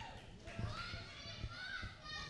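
Children in the crowd calling out and heckling, their high voices faint and overlapping in a hall.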